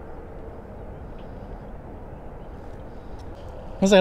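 Steady rushing outdoor noise of wind and water around a kayak on open water, with a man's voice starting just before the end.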